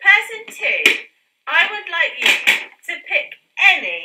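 People talking in high-pitched voices, with one brief tap about a second in.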